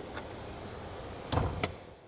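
A car latch clunks once, with a lighter click right after, about a second and a half in, over faint steady background noise.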